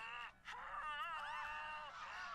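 A cartoon woman's high-pitched wail from the episode's soundtrack. A short cry is followed by a brief break and then a longer, wavering cry.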